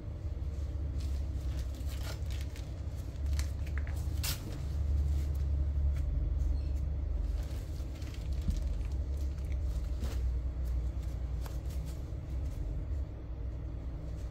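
A steady low background rumble, with a few faint light taps and clicks.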